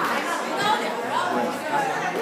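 Indistinct chatter of several people talking at once in a large indoor hall, with no single voice clearly in front.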